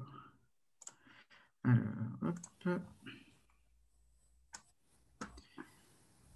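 A few sharp clicks over a video-call connection, one just under a second in and two near the end, with a short stretch of indistinct voice between them.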